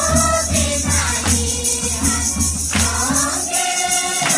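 A group of voices singing a Mundari Christian hymn (bhajan) together, over rhythmic jingling percussion that keeps a steady beat.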